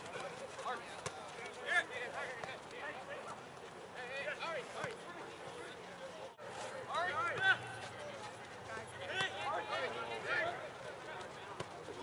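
Distant shouts and calls from soccer players and sideline spectators during a match, short cries scattered throughout, with a brief dropout about six seconds in.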